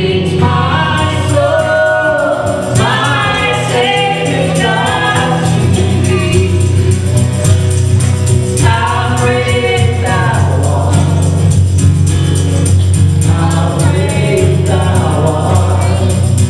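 A live gospel song: a man and a woman singing to acoustic guitar, over a steady low accompaniment.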